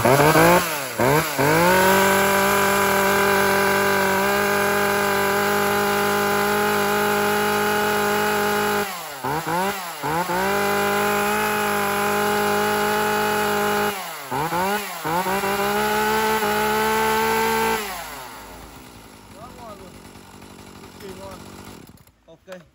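Shindaiwa 2035S 35 cc two-stroke chainsaw running free with no cut, held at high revs. Three times the trigger is let off and squeezed again, so the revs dip and climb back. Near the end the engine drops away.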